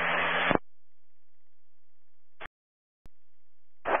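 Air-band radio static hiss at the tail of a transmission, cutting off about half a second in. Then a quiet gap broken by a short squelch burst and a click, before the next radio voice starts at the very end.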